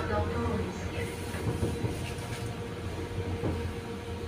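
Interior running noise of a Konstal 805Na tram: a steady low rumble with a constant thin hum over it.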